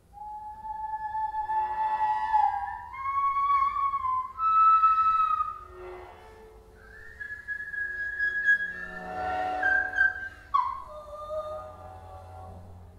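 Whistle-like high tones in a free improvisation for voice and electronics: long held notes stepping upward in pitch over the first five seconds, a brief lull, then a higher note held for a few seconds before sliding sharply down near the end.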